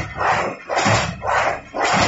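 Paper straw making machine running at a steady 45 m/min, with a regular cyclic stroke of a low thump and a rush of noise about twice a second.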